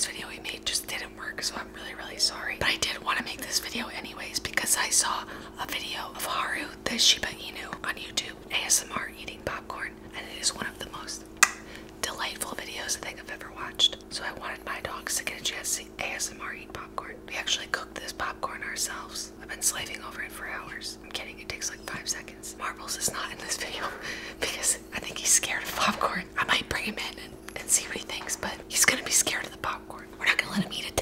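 A woman whispering close to the microphone in ASMR style, with a steady low hum underneath and one sharp click a little over a third of the way through.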